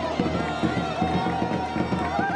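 Traditional folk music: a reed wind instrument holds a high, wavering tone over a fast, steady drum beat.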